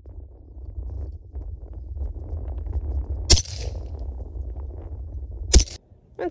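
Two shots from an AR-15 pistol in 5.56×45mm, a little over two seconds apart, the first coming about three seconds in and trailing a short echo.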